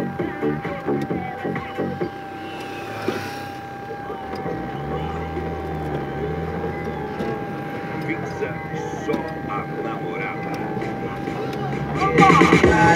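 Car engine and road noise inside the cabin as the car drives off and picks up speed, with the engine note rising from about four seconds in. A thin, steady high whine runs underneath.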